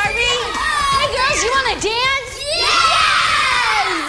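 A group of children shouting and cheering together, many high voices overlapping, ending in one long cry that falls in pitch.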